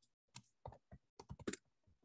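Typing on a computer keyboard: a quick, faint run of about ten keystrokes.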